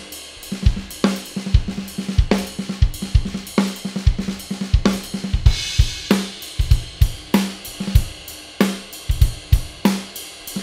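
A Tama Star Bubinga drum kit played in a swung groove: ride cymbal over a 14-inch bell brass snare and a 22-inch bass drum. The snare strikes about every second and a quarter with bass-drum strokes between, and a cymbal crash rings out about five and a half seconds in.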